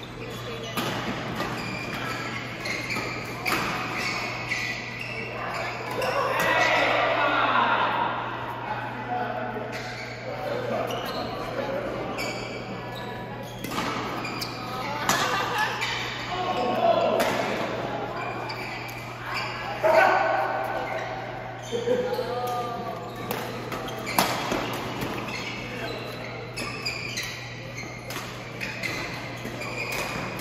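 Badminton rackets striking a shuttlecock in repeated sharp hits through a doubles rally, echoing in a large sports hall, with voices from around the hall and a steady low hum underneath.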